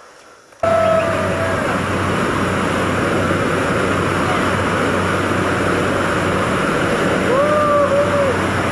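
Jump plane's engine and propeller at full power on the takeoff run and climb, heard from inside the cabin: a loud, steady noise with a low hum that cuts in abruptly about half a second in.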